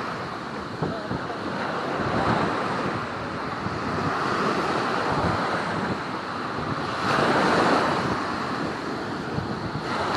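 Small ocean surf breaking and washing up the beach at the water's edge, swelling and easing in surges every few seconds, the loudest about seven seconds in. Wind buffets the microphone throughout.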